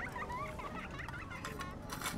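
A mouthful of fried octopus being chewed close to a clip-on microphone, with faint small clicks, over a low babble of distant voices.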